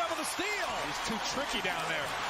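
Basketball game broadcast playing quietly underneath: arena crowd murmur with a ball being dribbled on the hardwood court.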